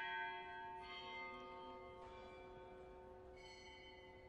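A bell struck three times, a little over a second apart, each stroke ringing on and fading slowly over the ring of the stroke before. It is the consecration bell, rung as the host is raised at the elevation.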